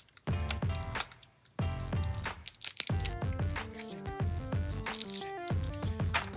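Background music: a melody of short stepping notes with percussive hits. It drops out briefly twice in the first second and a half.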